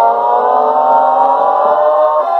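A 1954 shellac 78 rpm record played on a portable acoustic gramophone, giving an orchestral passage without the lead vocal. The band holds one long chord, and the sound is thin and narrow, with little top end.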